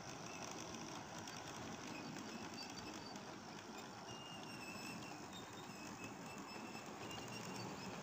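Model Class 68 diesel locomotive and its coaches running along the layout's track: a faint, steady rattle with light clicking of wheels on the rails.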